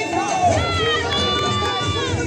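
Caporales dance music playing, with a high voice that glides up and then holds one long note, over crowd noise.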